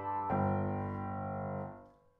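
Piano playing the closing chord of a piece. The chord is struck about a third of a second in, rings, and fades away to nothing near the end.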